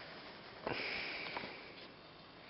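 A person sniffing, a short breath drawn in through the nose about two-thirds of a second in, then fading, over quiet room tone.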